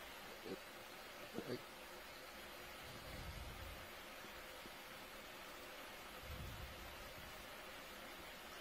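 Faint, steady hiss of the livestream's control-room audio feed, with two brief faint sounds about half a second and a second and a half in.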